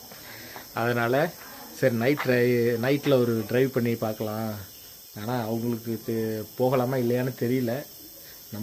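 A man talking, with crickets chirring steadily behind his voice.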